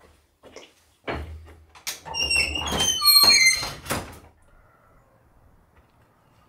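Old wooden cabin door being handled: a few knocks and thunks, then a loud, high squeaking creak of the hinges lasting about two seconds, bending in pitch.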